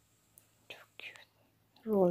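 Mostly quiet, with two short soft whispery sounds in the middle, then a woman starts speaking just before the end.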